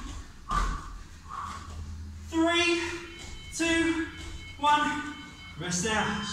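A person's voice: two short breaths, then three or four short voiced sounds of about half a second each, with no recognisable words.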